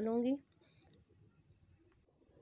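A woman's voice finishing a sentence in the first half-second, then near silence with a couple of faint clicks.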